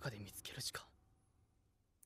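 Faint speech in the first second, then near silence.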